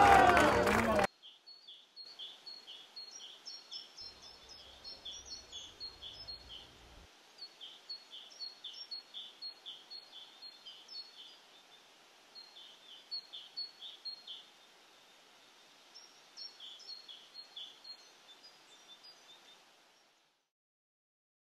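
Faint chirping of small birds: short high notes, a few each second, in runs broken by short pauses. Loud voices cut off about a second in.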